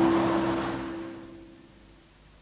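Closing credits music ending on a held chord that fades away over about a second and a half, leaving only faint hiss.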